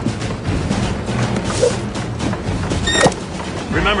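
Cartoon soundtrack of background music under a busy run of short clicks and clatters, with a short, bright, pitched ding about three seconds in.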